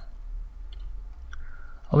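A couple of faint computer mouse clicks over a low steady hum.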